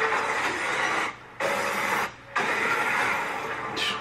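Movie trailer sound effects for a magic spell: a loud, dense rushing noise in three stretches, cut off suddenly twice for a fraction of a second.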